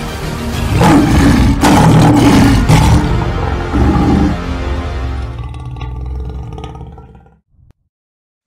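Dramatic trailer music under a logo reveal, with a loud lion-roar sound effect between about one and three seconds in. The music then fades out and stops just before the end.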